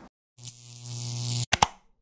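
Edited logo sting sound effect: a swelling whoosh over a low steady hum builds for about a second, cuts off suddenly, and is followed by a couple of sharp clicks.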